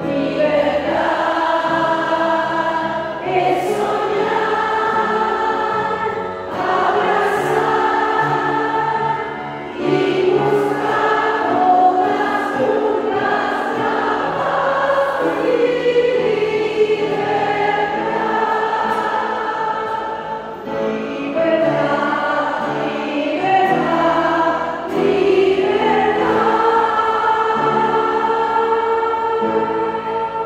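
A congregation of women singing a hymn together, line after line, with brief breaks between phrases.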